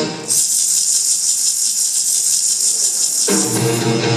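A big band stops and a shaken percussion instrument, jingles or beads rattling, plays a steady fast shake for about three seconds on its own, as a held break in the music. Near the end the full band comes back in.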